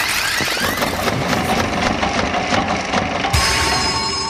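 Whimsical sound effects: fast clattering and ticking mixed with sparkly rising glides, then a steady chord of ringing tones about three seconds in.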